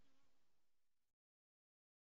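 The last faint tail of a recorded song fading out, a few held notes dying away, then cut off to total silence a little after a second in.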